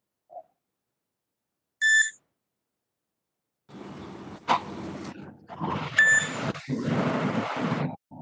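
A short electronic beep about two seconds in. From about halfway on comes a stretch of muffled noise over a video-call microphone, with a second brief beep inside it.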